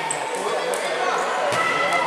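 A futsal ball being kicked and bouncing on a wooden indoor court, a few sharp thuds, over indistinct shouting voices in a large sports hall.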